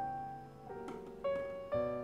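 Background piano music: a slow, gentle melody with a new note or chord about every half second.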